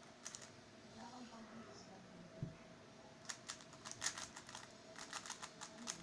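Plastic layers of an MF3RS stickerless 3x3 speedcube clicking as it is turned fast during a solve, in quick runs of clacks that are densest over the last three seconds. One dull thump about two and a half seconds in.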